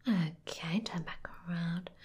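A woman's soft-spoken, breathy speech in short phrases, with a few small clicks between them.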